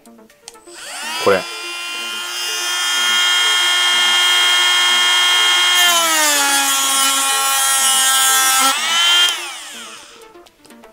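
TACKLIFE RTD02DC 8V cordless rotary tool with a sanding drum, set to 20,000 rpm. It spins up to a steady high whine, and about six seconds in its pitch drops and stays lower for a few seconds as the drum grinds into hard plastic. The pitch rises again as the drum comes off the work, and the motor winds down near the end.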